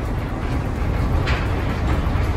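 Steady low road rumble heard inside the cab of a BrightDrop Zevo 600 electric delivery van while it drives along a city street.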